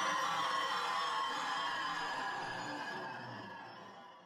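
Contemporary chamber music of flute and electronic keyboard holding sustained tones, growing steadily quieter and fading out at the end.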